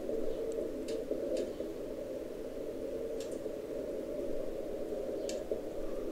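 Amateur radio receiver audio on 40-metre CW through a narrow filter: steady, band-limited static hiss with a weak Morse code signal barely above the noise. A few faint clicks sound in between.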